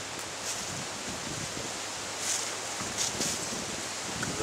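A stripped nettle stem being pulled along the back of a knife to crush it flat, giving a few soft scraping swishes over a steady hiss of wind and rustling.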